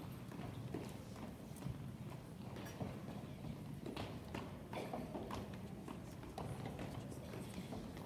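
Many small footsteps knocking irregularly on hollow wooden stage risers as children shuffle into place, over faint murmuring voices.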